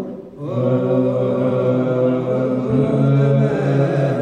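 Ethiopian Orthodox liturgical chant (zema) sung by a group of men's voices into microphones, moving together on long held notes after a brief pause for breath near the start.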